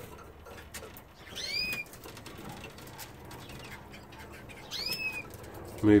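Canary calls in a birdroom: two short arched chirps, the first about a second and a half in and the second near the five-second mark, over a faint steady background.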